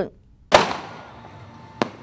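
Fireworks going off: one loud bang about half a second in that dies away slowly, then a sharper, shorter crack near the end.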